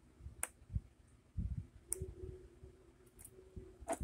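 Quiet handling noise of multimeter test probes and leads: about four sharp, short clicks spread out, with a few soft knocks between them.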